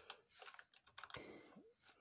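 Faint keystrokes on a computer keyboard: a string of irregular key clicks.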